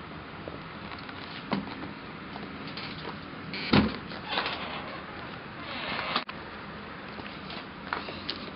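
A stacked washer-dryer door is pulled open with a loud clunk about four seconds in, followed by scraping and rustling as the machine is handled, then a sharp click a couple of seconds later. A smaller knock comes earlier.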